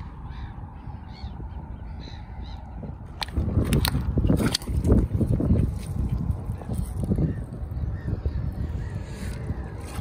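A few faint bird calls, then, from about three seconds in, seaweed-covered rocks being turned over by hand. The stones clack and knock and wet bladderwrack rustles, over a low rumble of handling noise.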